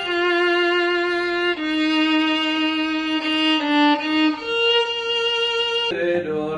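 Solo violin bowing a slow line of long sustained notes. The line steps down through several held notes, then rises to a higher note held through the last second and a half.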